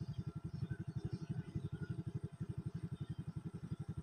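Small motorcycle engine idling steadily, an even low putter of about a dozen beats a second.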